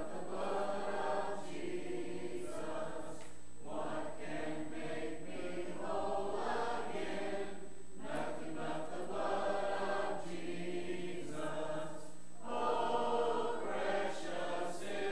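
Congregation singing a hymn a cappella, in long sung lines with short pauses for breath between them.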